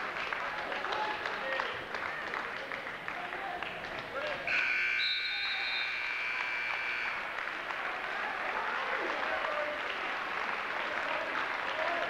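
Electric timer buzzer sounding once, one loud steady tone of about two and a half seconds, signalling the end of a wrestling period. Crowd voices and clapping run underneath.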